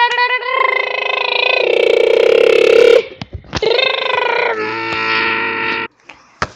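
A person's voice making long, held, pitched vocal sounds without words, in two stretches broken by a short gap about three seconds in, cutting off just before the end.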